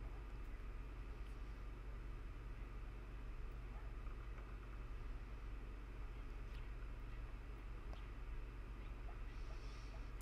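Quiet room with a steady low hum, and a few faint soft taps and rustles as pieces of boiled chicken liver are set down on a paper towel.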